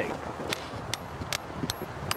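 A hammer striking a metal tent peg into hard snow: four sharp blows, evenly spaced a little under half a second apart, after a short laugh at the start.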